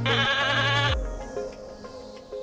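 A woman's nasal laugh with a wavering pitch, lasting about a second, over background music whose bass line drops out as the laugh ends.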